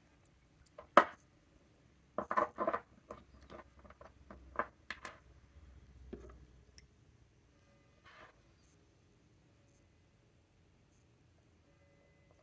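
Small ink sample vial handled on a desk: a sharp click about a second in, then a run of clinks and taps over the next few seconds as it is stood in a holder and its cap is taken off.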